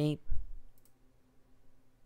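A low thump just after the narrator's word ends, then a faint computer mouse click a little under a second in.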